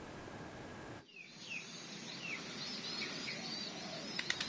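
Faint outdoor ambience: several short bird chirps, each falling in pitch, over a steady low hiss. They begin after an abrupt cut about a second in; before that there is only faint hiss.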